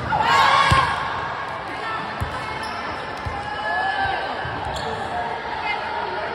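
Volleyball rally in a large gym: a ball being hit and landing with a few sharp smacks, the loudest just under a second in, under players' shouted calls and chatter that echo in the hall.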